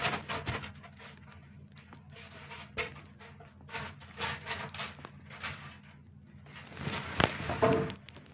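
Handling noise from a MontMarte A2 wooden drawing board being unpacked: a series of short rustles and scrapes as its packing sheet is slid off and the board is set upright. The loudest bout comes near the end.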